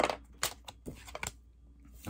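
A tarot deck being shuffled by hand: a handful of sharp card snaps and clicks over the first second and a half.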